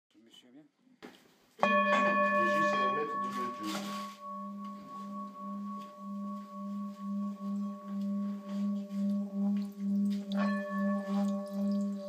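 Bronze Nepalese singing bowl holding water, struck about one and a half seconds in and then rubbed around the rim with a wooden stick. It gives a low hum with bright overtones that fades, then swells again with a steady wobble of about one and a half pulses a second.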